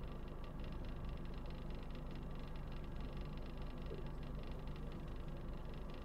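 Steady low background hum with a faint hiss, even throughout, with no distinct events.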